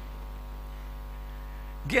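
Steady electrical mains hum through a microphone and sound system, low and unchanging. A man's voice begins near the end.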